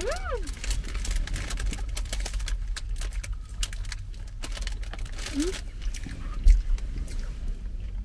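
A clear plastic pastry bag crinkling in the hands and eating sounds, with a short hummed 'mm' at the start and another brief hum about halfway through. A steady low rumble runs underneath, and a single dull thump, the loudest sound, comes a little past six seconds.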